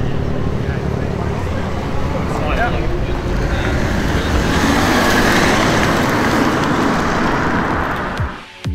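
Modified BMW 3 Series engines and exhausts: one car pulls away, and from about halfway another runs louder as it comes toward the camera.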